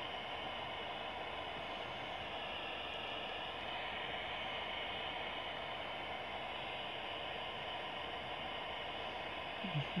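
Ghost-box radio playing a steady hiss of static, even in level and without clear breaks.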